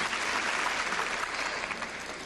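Large arena crowd applauding, dying down toward the end.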